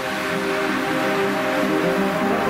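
Background music: steady held chords with no strong beat.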